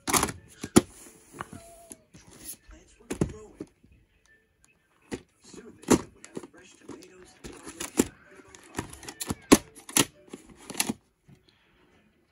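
A plastic VHS cassette and its clamshell case being handled: a string of irregular sharp clicks and knocks as the case is lifted, opened, set down on the carpet and the tape picked up.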